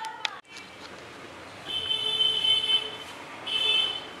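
A high-pitched buzzing tone sounds twice, first for over a second and then briefly near the end, over faint room noise; a short click comes just before.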